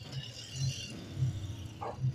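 Faint background noise of an outdoor gathering, a low murmur with no clear single source.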